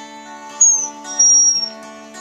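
An acoustic guitar chord ringing while a border collie gives two high, thin whining notes over it, the first sliding down in pitch, about half a second and a second in.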